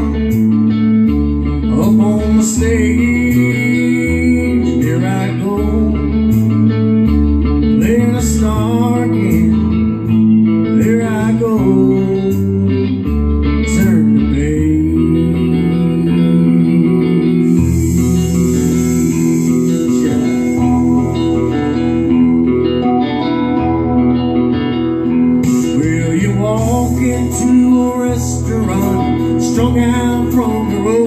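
Instrumental break of a rock song: guitar over bass and drums, with no singing.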